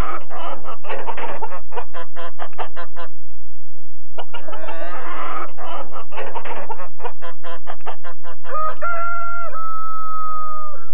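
Chickens clucking in two rapid runs, then a rooster crowing, its last note held steady for about two seconds near the end.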